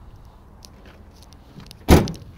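2011 Ford F-350 pickup tailgate being shut: a few faint clicks, then near the end one loud, solid bang with a short ring after it as it latches.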